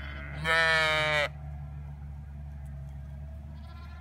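A Zwartbles sheep bleating once: a single loud call of about a second that wavers slightly and drops in pitch at its end, over a steady low hum.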